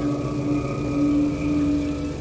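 Background music score: a synthesizer pad holding a few steady notes, the lowest one coming and going.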